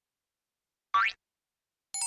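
Cartoon sound effect: one short, quickly rising "boing" about a second in.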